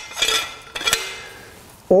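A metal soil auger and its cutting head clinking as they are handled and lifted. There are two sharp metallic knocks, one at the start and one about a second in, each ringing briefly.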